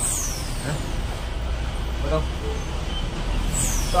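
Road traffic: a steady low engine rumble, with two high hisses falling in pitch, one at the start and one near the end.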